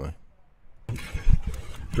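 Wind rushing and buffeting on the microphone of a cyclist's handheld camera while riding, with low thumps, starting about a second in after a brief lull.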